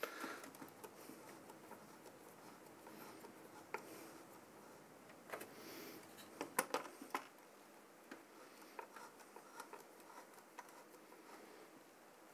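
Faint, scattered clicks and scrapes of a CPU cooler's mounting screw being worked by hand onto its bolt on the mounting bar, with a few sharper clicks in the middle.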